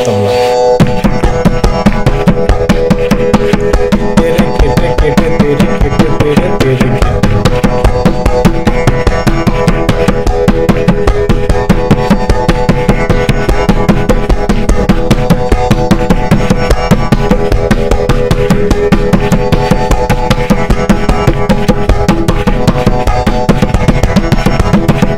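Tabla pair played with both hands in a fast, unbroken run of strokes, the right-hand dayan ringing at its tuned pitch over the deeper left-hand bayan. The rapid playing starts about a second in.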